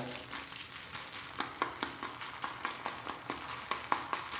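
Synthetic shaving brush working thick shaving-soap lather in a ceramic lather bowl: a wet, crackling squish with a run of small irregular clicks.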